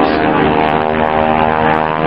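North American T-6 Texan flying overhead, its radial engine and propeller giving a steady, loud drone with many even tones.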